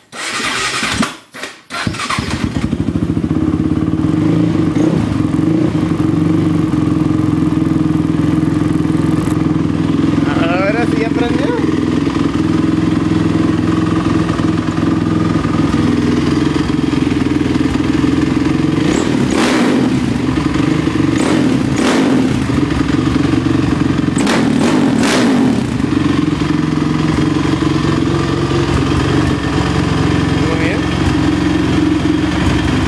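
Sport quad (ATV) engine catching after a short bout of cranking at the start, then running steadily, with a few brief louder bursts around the middle. It fires at last after a hard-starting session.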